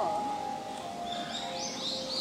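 Soft background music with sustained notes, with birds chirping repeatedly in high short calls from about a second in.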